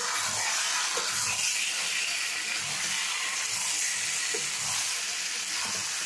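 Chicken and potato curry sizzling steadily in a kadai as a spatula stirs through it, a constant frying hiss with a couple of faint scrapes from the spatula.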